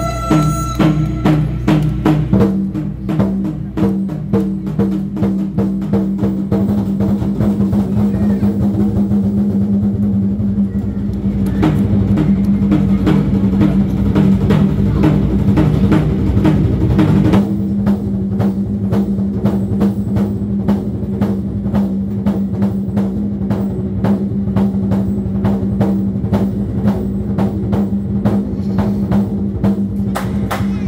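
An ensemble of red Chinese barrel drums played together with a drum kit in rapid, continuous rolls that grow louder for about seventeen seconds. Then the playing switches to a steady beat of separate, evenly spaced strokes.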